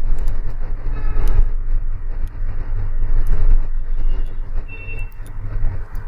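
Steady low rumbling background noise with scattered faint clicks.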